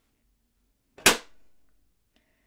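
A magnet snapping onto a box, a single sharp clack about a second in that dies away within half a second.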